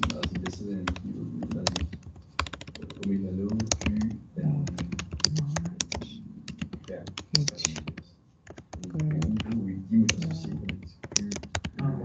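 Computer keyboard being typed on: quick runs of key clicks as a sentence is written, broken by a few short pauses, with voices talking underneath.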